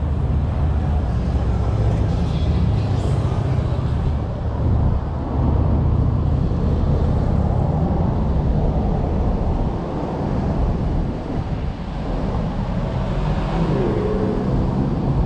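Steady road traffic noise at a busy intersection: cars passing and idling, a continuous deep rumble with no single event standing out.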